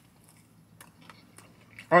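Faint chewing of a mouthful of pizza, with a few soft mouth clicks about a second in. A man's voice begins just at the end.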